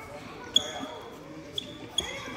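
A soccer ball being struck in a gymnasium: three sharp hits, the first about half a second in, then two more close together near the end, each followed by a brief high ring. Children's voices are faint underneath.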